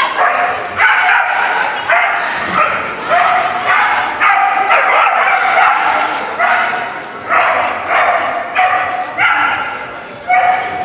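A dog barking in a rapid, high-pitched string, about two barks a second.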